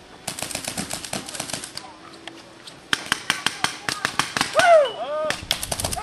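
Paintball guns firing rapid volleys, about nine shots a second, in three bursts: one starting just in, one from about three seconds, and a short one near the end. A person shouts briefly between the second and third bursts.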